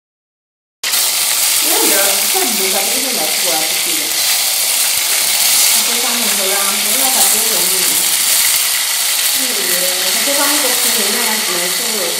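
Food sizzling loudly and steadily in a hot pot on a gas burner, starting abruptly about a second in, with women's voices talking over it.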